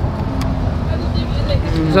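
Steady low rumble of outdoor background noise with a faint hum, and a single short click about half a second in.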